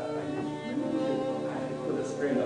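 Violin music with long held notes.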